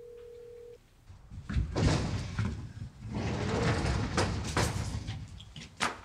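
A phone's ringback tone, one steady tone that cuts off about a second in, as an unanswered call is ended. Then, from about a second and a half in, a sliding door rattling along its track as it is opened.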